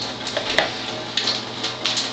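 Steady hiss of water running from a countertop water ionizer, with two light clicks from glassware or the meter probe being handled.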